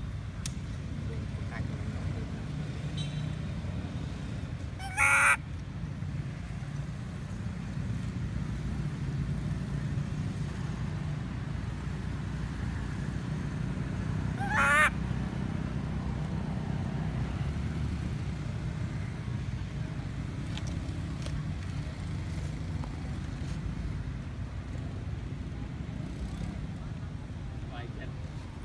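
Steady low outdoor background rumble, broken twice by a short, loud, high-pitched call or honk, about five and fifteen seconds in.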